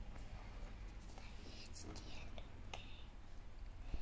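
Faint whispering voice, with a few short breathy sounds around the middle, over a steady low background rumble.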